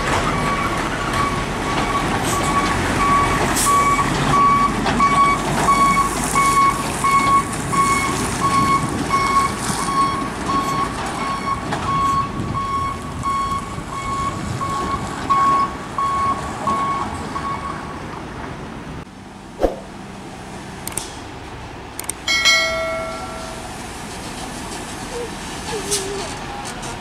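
Hino truck's diesel engine labouring as it climbs and passes, with an electronic warning beeper sounding about twice a second; the beeping stops about two-thirds of the way through. Near the end a short horn blast is heard as the next truck approaches.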